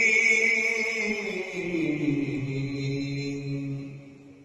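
A man reciting the Quran in the melodic Turkish style, a single sustained voice gliding downward to a long low held note that fades away near the end.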